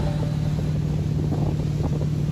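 Tow boat's engine running steadily under way with a low, even hum, mixed with wind noise on the microphone.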